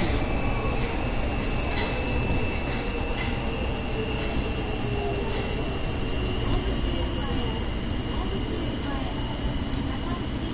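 Kita-Osaka Kyuko 9000-series subway train running through a tunnel, heard from inside the car: a steady low rumble of wheels and running gear with a thin high whine held throughout, creeping slightly up in pitch, as the train draws near a station.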